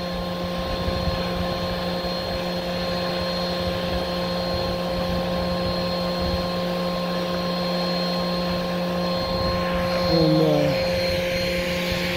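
A steady machine hum with one unchanging pitch and its overtones, over an uneven low rumble like wind on the microphone.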